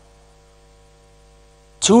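Faint, steady electrical mains hum in the sound feed, a low buzz with even overtones, in a pause between spoken phrases. A man's voice comes back in near the end.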